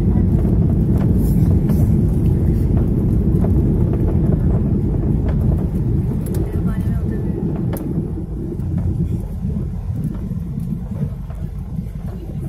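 Airplane cabin noise heard from a window seat in flight: a steady low rumble of engines and airflow, easing slightly after about six seconds.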